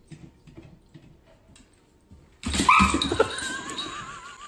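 Faint clicks, then about two and a half seconds in a dog starts whining loudly in a high, wavering tone that keeps going.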